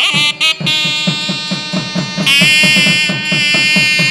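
South Indian temple ensemble of nadaswaram and thavil: the double-reed nadaswaram plays wavering, held notes over rapid, steady thavil drum strokes, the melody jumping to a higher held note about two seconds in.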